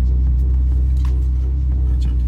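Steady low rumble of a car's running engine and drivetrain, heard from inside the cabin.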